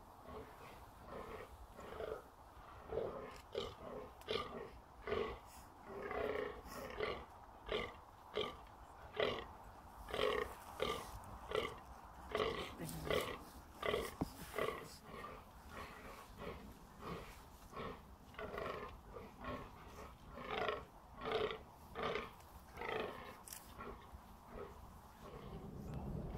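Fallow deer bucks grunting in the rut: a long run of short, deep belching calls repeated about twice a second, the males' rutting call.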